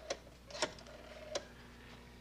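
A black rotary telephone being dialed, giving three sharp clicks spread over about a second and a half as the dial is turned and released.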